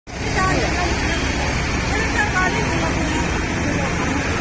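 Muddy floodwater rushing across a street in a steady wash of noise, with vehicles driving through it and faint voices of onlookers.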